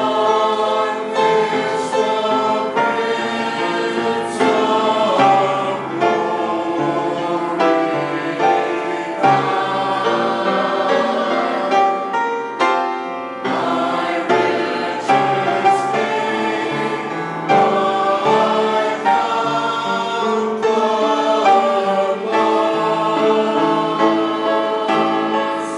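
Church choir of mixed men's and women's voices singing a hymn anthem in parts, with a short break between phrases about halfway through.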